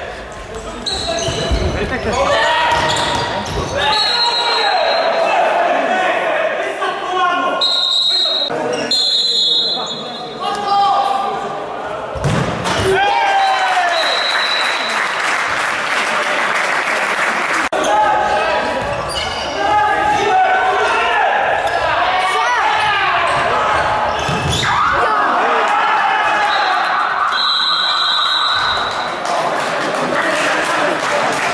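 Live sound of an indoor futsal game in a large, echoing sports hall: players' shouts and calls throughout, the ball thudding on the court floor, and a few short, high, shrill tones along the way.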